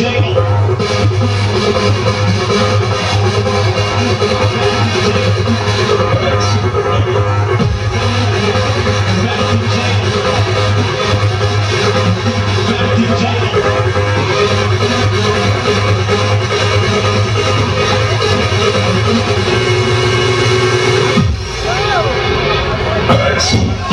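A DJ's electronic dance music played loud over a stage sound system, with a steady heavy bass. The bass drops out briefly near the end.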